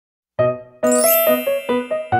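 Intro jingle: a short melody of bell-like keyboard notes, each struck and fading, starting about a third of a second in, with a high glittering chime shimmer layered over it from about a second in.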